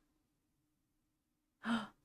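Near silence, then a woman's short gasp near the end.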